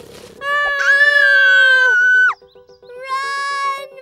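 A cartoon character's long, high held cry that breaks off with a sharp downward slide, then a second, shorter held cry. Underneath is music with a quick, even ticking pulse.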